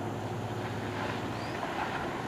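Harsco rail grinding train at work: a steady low hum from its diesel engines under an even rushing noise.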